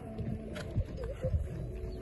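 Horse cantering on a sand arena: dull hoofbeat thuds with a breathy snort at each stride, about two strides a second.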